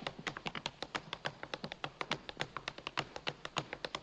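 Tap shoes on a dance floor: a quick, steady run of crisp taps, about eight a second, as a simple tap step is demonstrated.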